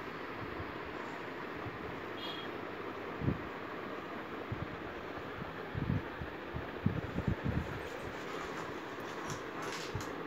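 Steady background noise, with a few soft low thumps about three seconds in and a cluster of them around six to seven and a half seconds in.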